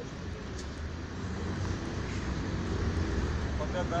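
City street traffic: a steady low engine rumble from passing road vehicles, growing louder over the few seconds.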